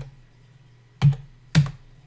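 Two sharp clicks of computer keys about half a second apart, about a second in, over a low steady hum.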